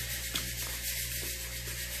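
Steady hiss with a low hum underneath, and a single faint click about a third of a second in.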